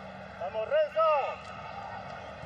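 A man's voice, a short phrase of commentary about half a second in, over a steady background noise of the stadium broadcast.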